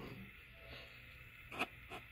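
Quiet room tone with one sharp click about one and a half seconds in and a fainter click just before the end.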